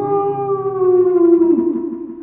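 A man singing one long held note into a karaoke microphone. It rises slightly at the start, then slides slowly down in pitch and fades out near the end.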